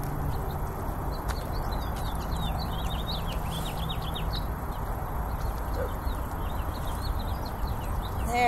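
Small birds chirping in rapid, short high notes, busiest through the first half, over a steady outdoor background rumble.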